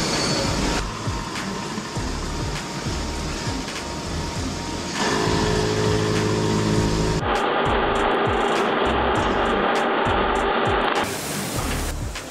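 Metal-cutting machine tools running in a factory, including a coolant-flooded machining centre and a boring spindle. The sound changes abruptly every few seconds. Near the middle it is a steady hum with a pitch, and later a harsher stretch with clicks.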